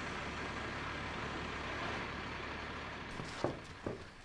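School bus engine idling steadily with a low hum. About three seconds in it stops, and a few sharp knocks follow.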